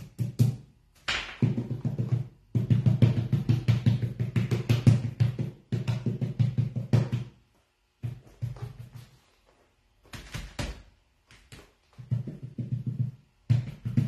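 Paint brush dabbed rapidly against the side of a hollow wooden cabinet, making quick runs of low thuds, several a second, that stop and start in short bursts.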